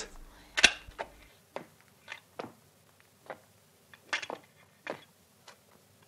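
Light metallic clicks and taps, about a dozen scattered through, the loudest about half a second in, as a new cutting tool is fitted and clamped in a lathe's tool post.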